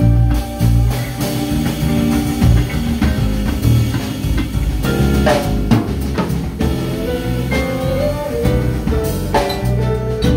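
A live band playing: electric guitars and bass guitar over a drum kit, with a steady beat.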